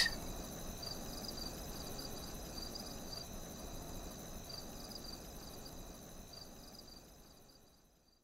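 Crickets chirping in a steady, pulsing trill, fading out gradually to silence near the end.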